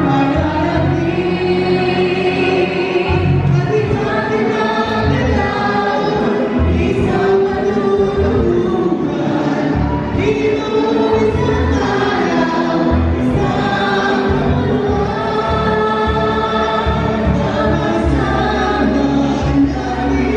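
A mixed group of two men and two women singing together into handheld microphones, with instrumental accompaniment and steady bass notes underneath.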